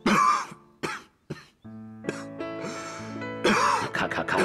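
A man coughing hard: a loud cough at the start, two short ones just after, and another loud one near the end, over soft background music.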